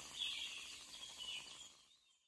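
Faint forest ambience with birds chirping, fading out near the end.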